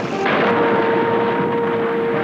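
Cartoon sound effect of a dam bursting: a loud, dense rush and rumble of water and crumbling debris. A held musical note comes in about a third of a second in and stays under it.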